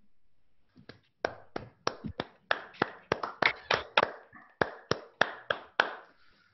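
Hands clapping in applause, a run of sharp separate claps at about four a second that starts about a second in and lasts about five seconds.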